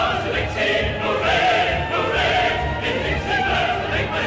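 A choir singing one of the songs of a medley of Confederate-era Southern songs, with instrumental backing.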